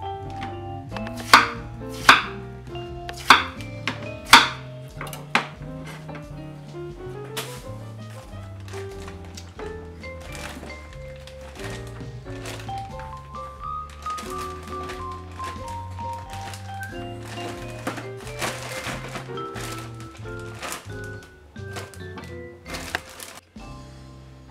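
Kitchen knife chopping through yam onto a wooden cutting board, with sharp chops about once a second in the first few seconds and a few more near the end. Background music with a steady bass line plays throughout.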